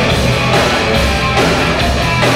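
Rock band playing live, loud and continuous, with drums and electric guitar.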